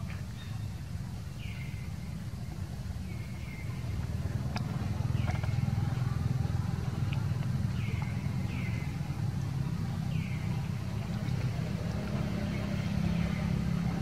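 Steady low rumble of outdoor ambience, growing louder about four seconds in, with about a dozen short high-pitched calls from an animal, each falling in pitch, scattered through it.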